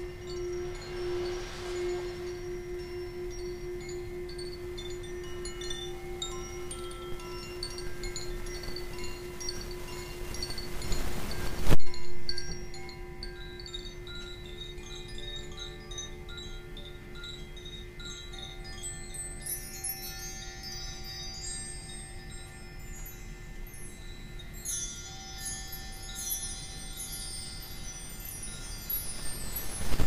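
A singing bowl's steady low ring fading under scattered high chime notes, broken about twelve seconds in by a rushing swell that ends in a sharp knock. In the second half, bar chimes are swept again and again, each sweep a falling run of high tinkling notes.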